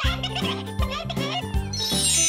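Bouncy children's-song backing music with cartoon sound effects. Near the end a twinkling, sparkling magic-spell chime starts up in the high register.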